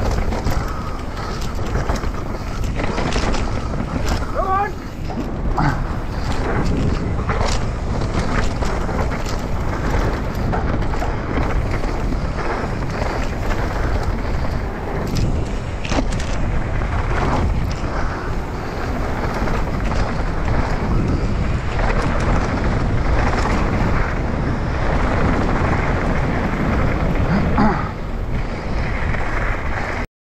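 Mountain bike descending a dirt trail, heard from a camera on the rider: steady wind rush on the microphone, with constant rattles and knocks from the bike over the bumps and tyres on loose dirt.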